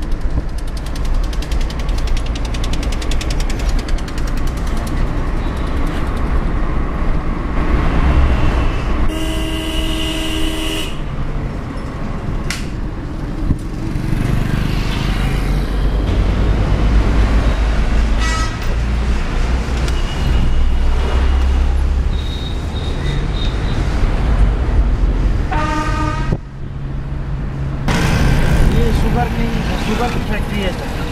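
Steady low rumble of a vehicle moving along the road, with horns honking: a long blast about a third of the way in and another near the end, plus shorter toots in between.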